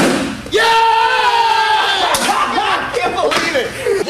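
A single sharp smack as a martial-arts kick lands on a target held by a partner, followed about half a second later by a man's long, held shout and then shorter exclamations.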